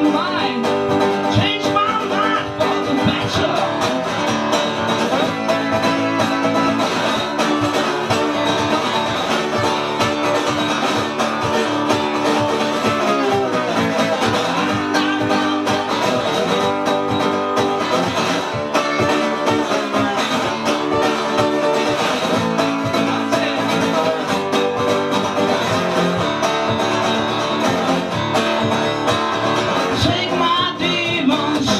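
A man singing while strumming an acoustic guitar in a steady rhythm: a live solo singer-songwriter performance.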